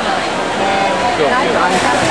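Spectators chattering around the pool. Near the end comes a rush of splashing as the swimmers dive in off the starting blocks.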